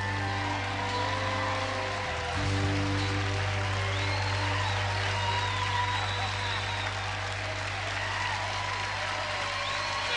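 Live band music ringing out at the close of a song, acoustic guitar and held low notes, under an audience applauding and cheering.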